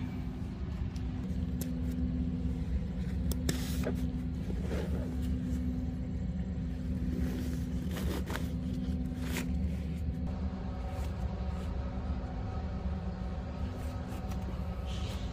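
A nylon backpack being handled and opened: scattered clicks of plastic buckles and rustles of fabric. Under them runs a steady low rumble with a constant hum.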